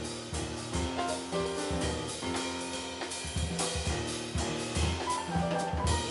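Live jazz piano trio: grand piano and drum kit improvising freely together over an upright bass holding to a fixed part, with busy drum and cymbal strokes throughout.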